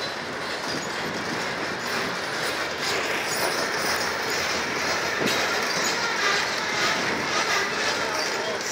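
Freight train of open-top hopper cars rolling past close by: a steady rumble and rattle of steel wheels on rail, with one sharp click about five seconds in.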